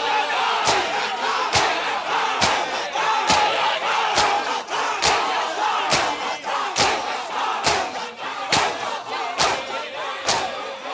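Crowd of men doing matam: beating their chests with their hands in unison, a sharp collective slap a little under once a second, while many men's voices chant and shout over it.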